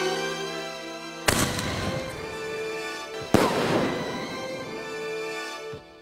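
Aerial shell firework: two sharp bangs about two seconds apart, each followed by a fading crackle, over background music.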